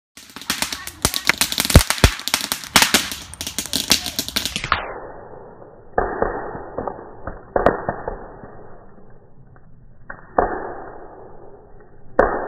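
Wood bonfire crackling and popping: a rapid run of sharp pops for the first four and a half seconds. The sound then drops in pitch and slows as the iPhone's slow-motion playback takes over, leaving a low hiss with three deep, drawn-out pops.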